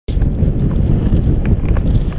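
Strong wind buffeting an action camera's microphone, a loud, steady low rumble, during snow kiting in a 30–50 km/h wind.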